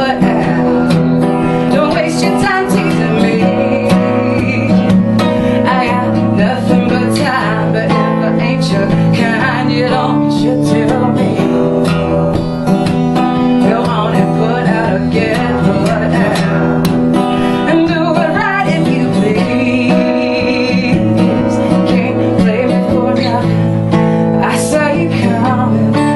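Live band music led by a strummed acoustic guitar, playing steadily through a passage of the song.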